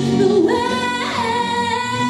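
A woman singing into a microphone over a musical accompaniment, holding one long note from about half a second in.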